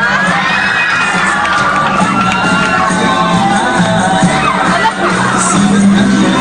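Audience of students screaming and cheering, many overlapping high-pitched voices, over loud dance music playing for a group dance performance.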